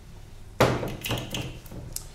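A glass olive oil bottle set down on a wooden cutting board: one sharp knock a little over half a second in, then a few lighter knocks and clicks.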